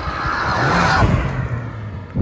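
A red Honda Civic hatchback driving past close by. Its engine note and tyre noise swell to a peak about a second in, then ease off.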